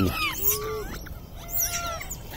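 Rhesus macaques calling: a run of short high squeaks and chirps, with a few longer coos that bend up and down in pitch, one about half a second in and one near the end.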